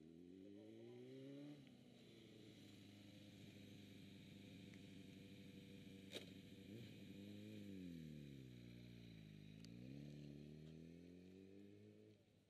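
Suzuki Bandit motorcycle's inline-four engine running at low revs, its pitch rising over the first second or two, holding, then dropping and climbing again toward the end as the throttle is opened and closed. One sharp click about halfway.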